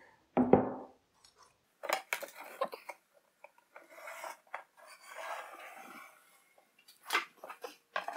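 Woodshop handling sounds: a brief knock near the start, then clicks of a metal combination square set against a plywood sheet and a pencil scratching marking lines across the plywood, with more clicks and scrapes near the end as the board is shifted.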